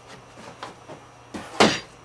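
A large cardboard box sleeve being lifted off and handled: faint rustling and light knocks, then a louder short thud with a scrape about a second and a half in as it is set down on end.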